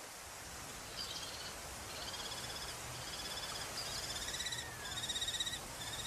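Kestrels calling: a run of short, high-pitched, rapid trills of about half a second each, repeated roughly once a second from about a second in.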